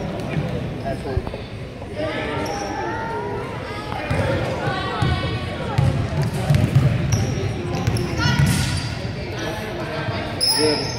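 A basketball being dribbled on a hardwood gym floor, the bounces mixed with spectators' and players' voices echoing around the gymnasium.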